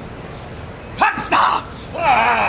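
A dog barks twice in quick succession about a second in, as it goes for a decoy in a bite suit during protection work.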